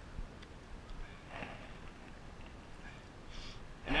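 Faint snip of small scissors cutting through a soft plastic craw trailer, over quiet outdoor background, with a short breath near the end.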